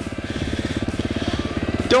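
Dirt bike engine idling, an even, rapid putter that grows slightly louder.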